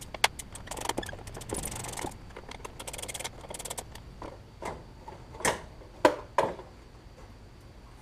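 Hand work in a car's engine bay: clicks, rattles and knocks of tools and plastic parts being handled while an ECU is taken out. There are two spells of quick, dense clicking early on and a few louder knocks past the middle.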